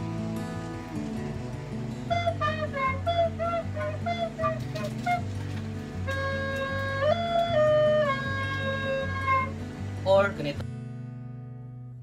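A white plastic recorder is played over steady backing music. Starting about two seconds in, it plays a quick run of short notes, then a few longer held notes that step up and back down. A brief rustle comes near the end.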